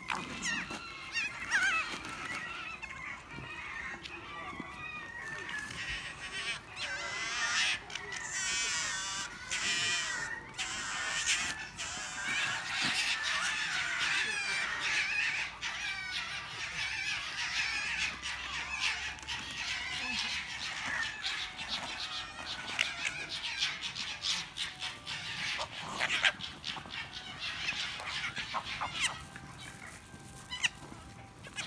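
A large pack of red foxes calling at once as they compete for scattered food: many overlapping high-pitched chattering calls, with a few louder peaks.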